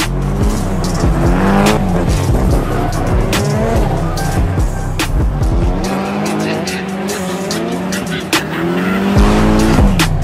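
Drifting cars' engines revving up and down, with tyres squealing, laid over background music with a steady beat. The music's bass drops out for about three seconds past the middle, then returns.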